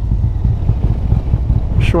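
Harley-Davidson Road Glide V-twin with Reinhart headers and 4-inch slip-on mufflers running at an easy riding pace, a deep steady rumble mixed with wind buffeting on the microphone.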